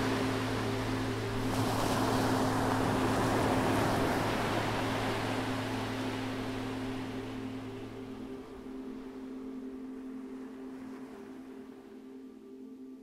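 Small waves breaking and washing up a sandy beach, the surf fading away over the last few seconds. Under it runs a sustained low drone of ambient music.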